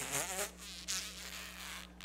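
Paper pages of a book rustling as they are leafed through by hand, an uneven high-pitched shuffling lasting about a second and a half after a brief murmur at the start.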